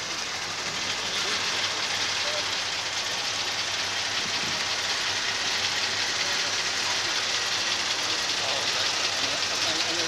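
Vintage car engine idling with a low steady hum, under the even murmur of a crowd of onlookers.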